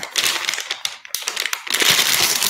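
Plastic packaging crinkling and crackling close to the microphone as a dialysis needle is unwrapped and handled, with a rapid run of sharp crackles that grows louder near the end.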